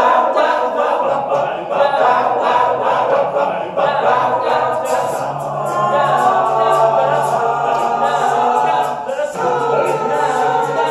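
A cappella vocal group singing in harmony, with a quick steady pulse through the first few seconds, then held chords over a low sustained bass note.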